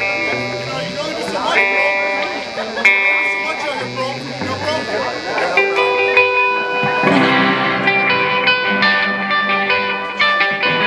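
A guitar played through an amplifier: single notes and chords left ringing, then a quicker run of picked notes from about seven seconds in. Voices chatter underneath, mostly in the first half.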